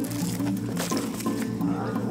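Background music, with a young lion cub's calls heard over it.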